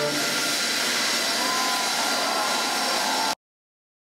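Jet engines of NASA's Boeing 747 Shuttle Carrier Aircraft running: a loud, steady rush with a faint high whine, cutting off suddenly a little over three seconds in.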